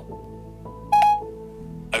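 A short electronic chime from an iPhone's Siri about a second in, as it takes the spoken reply to its question before answering.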